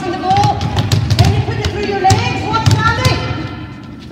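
Several basketballs bouncing on a sports hall floor: irregular thuds, with voices and music running underneath.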